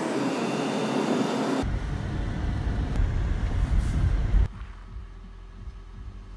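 Car driving on a road: steady road and engine noise with a deep rumble from about a second and a half in, which drops away sharply at about four and a half seconds.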